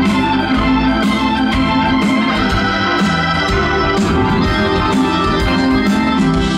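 Hammond organ playing held, sustained chords at the front of a live rock band, with drums keeping time underneath.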